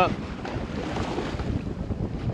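Wind buffeting the microphone over a steady rush of sea and boat noise on an open deck offshore.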